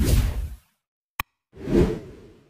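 Animation sound effects: a whoosh fading out, a single short mouse-click sound a little past a second in, then a second whoosh swelling near the end.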